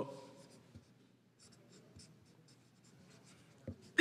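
Marker pen writing on paper: a series of short, faint scratchy strokes as characters are drawn.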